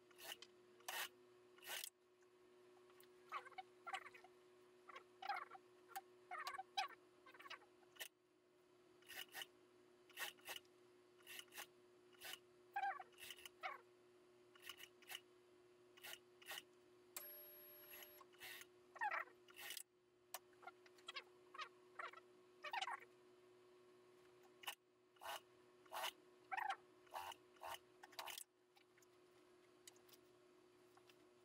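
Suit-jacket fabric rustling and scraping in short bursts as it is handled and shifted under an industrial sewing machine, with a few sharp clicks, over a faint steady hum.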